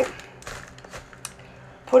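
Plastic zip-top freezer bag crinkling as it is handled, a few faint scattered clicks and crackles.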